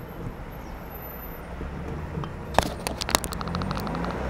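A motor vehicle's engine running nearby, a low steady rumble. A few sharp clicks come about two and a half seconds in, followed by a fast, even ticking near the end.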